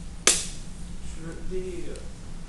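A single sharp snap about a quarter second in, followed by a faint voice: a student starting to ask a question.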